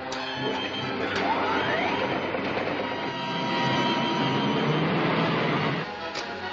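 Electrical machine sound effect of the serial's remote-control device running: a dense mechanical clatter and hum that starts suddenly, with a few clicks and a rising whine about a second in.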